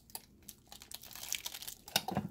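Plastic shrink-wrap bag crinkling as it is handled in a hand-held impulse sealer, with scattered small clicks. A sharper click comes near the end as the sealer arm is lifted and the sealed bag comes away.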